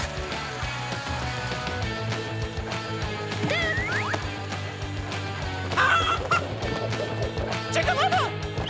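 A cartoon chicken clucking and squawking in two short bouts, a few seconds in and again about six seconds in, over background music.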